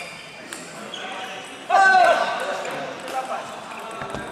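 Table tennis balls clicking off bats and tables, sparse hits echoing in a large sports hall. About two seconds in, a loud voice call rises over the play.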